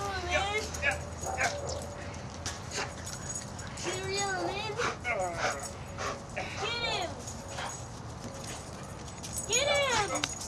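A dog whining and yipping in several short, high-pitched calls that rise and fall, one group near the start, others about halfway through and near the end.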